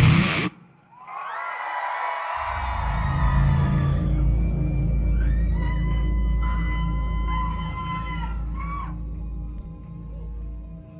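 Heavy metal band's song cutting off abruptly about half a second in, then an ambient interlude: sustained, gliding high tones over a deep steady bass drone that enters a couple of seconds in.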